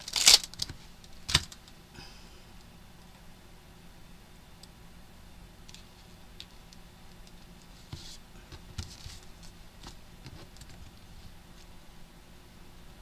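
A clear rubber-free stamp is peeled off its plastic carrier sheet with a short ripping burst just after the start, then a sharp click. Faint scattered ticks and rustles follow as the stamp is handled and set down on paper in a stamping platform.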